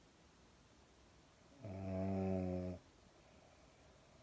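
A sleeping pug snores once, a single steady-pitched snore about a second long, starting about one and a half seconds in.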